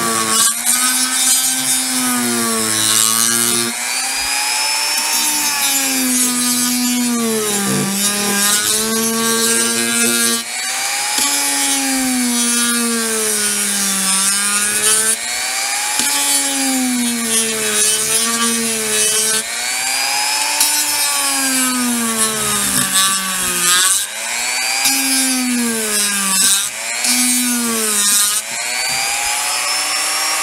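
Dremel rotary tool on its lowest speed setting, its sanding drum grinding away a model horse's plastic mane. The motor's whine keeps sagging and recovering in pitch over a constant gritty hiss.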